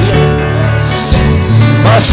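Live gospel worship music: a band holds slow sustained chords in a brief pause between sung lines, with the singing picking up again at the end.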